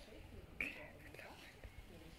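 Faint, distant chatter of people talking, with one brief high-pitched sound just over half a second in.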